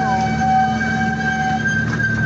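Miniature park train running along its track: a steady low hum with a sustained high-pitched whine over it, and a second, lower tone that stops near the end.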